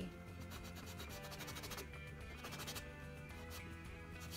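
Cloth rag rubbing quickly back and forth over a wet oil painting, wiping paint away, with quiet background music underneath.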